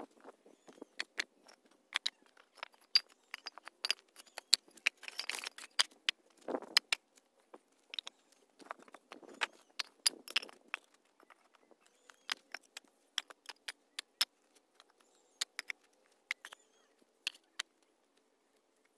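Bricks being worked loose from packed soil and handled: irregular sharp clicks and knocks of brick on brick, with a few short scraping swishes of brick or tool dragging through dirt, the loudest about five seconds in and again around nine to ten seconds.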